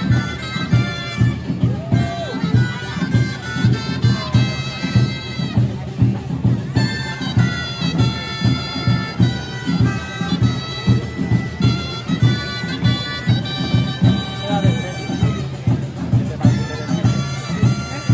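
Catalan gralles (shrill double-reed shawms) playing a folk melody over a steady drum beat of about two strokes a second.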